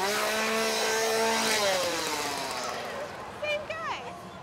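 A small engine revved hard and held at a steady high pitch for about a second and a half, then winding down and fading.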